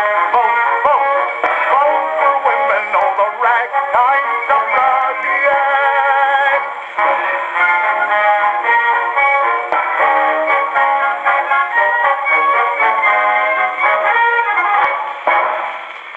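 A c.1912 acoustic-era ragtime record playing on a horn gramophone, its sound thin and lacking the top end. A male singer and a small studio orchestra are heard over the first few seconds, then the orchestra plays on alone and the record ends about a second before the close.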